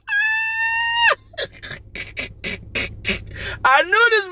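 A man laughing hard: a high, held falsetto squeal for about a second, then a quick run of breathy, gasping laugh pulses, then a falling laugh near the end.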